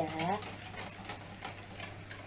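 Wire hand whisk beating a thin egg-yolk and milk batter in a plastic bowl, its wires clicking against the bowl in quick, irregular strokes.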